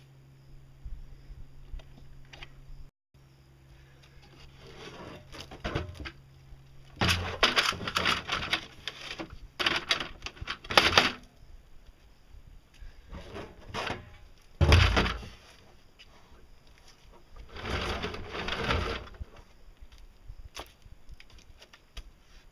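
Hollow plastic knocking, rattling and scraping as a PVC-pipe mixer frame and a plastic barrel are handled and set in place, in three bursts of a few seconds each. A low steady hum runs under the first third.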